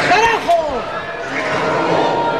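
Excited shouting voices, with rising and falling cries in the first second, and a sharp knock or two among them.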